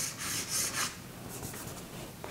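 Chalk scratching on a chalkboard in a few short strokes, the last one faint.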